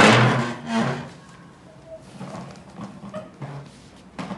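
A short, loud vocal cry right at the start, gliding in pitch, and a second shorter one just before a second in, followed by light clicks and taps of plastic toy parts being handled.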